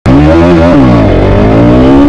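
Motorcycle engine revving: its pitch holds, dips about a second in, then climbs again.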